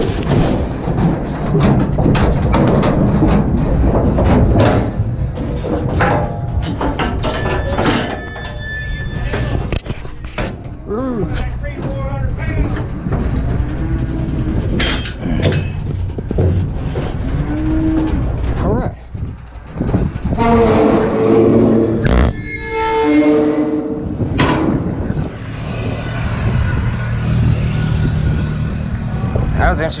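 Cattle moving in a metal livestock trailer: hooves and bodies clattering and knocking on the metal floor and sides in a long string of knocks, with a few loud drawn-out calls about two-thirds of the way through.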